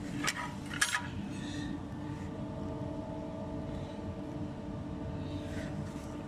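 Wires and corrugated plastic conduit of a truck's wiring harness being handled: two short clicks in the first second, over a steady faint hum.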